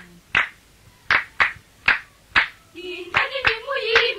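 A run of sharp hand claps, roughly one every half second. Voices singing join about three seconds in.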